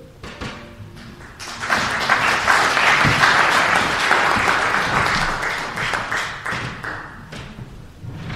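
Audience applauding: a crowd's clapping swells about a second and a half in, holds, and fades out near the end.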